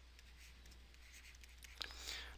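Near silence: faint scratches and taps of a stylus writing on a tablet, over a low steady hum.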